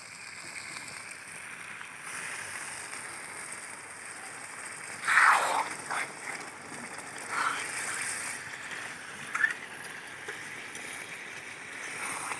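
Water poured from a small bowl into a kadai of frying chicken and cabbage curry, the loudest splash about five seconds in, over the steady sizzle of the pan. A few short scrapes of the ladle follow as the curry is stirred. The water goes in at the stage when the meat has released its oil.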